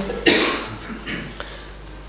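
A person coughing once: one short, loud cough about a quarter of a second in.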